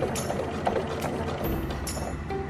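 Electric sewing machine stitching slowly through webbing and fabric, its needle mechanism clicking a few separate times, over background music.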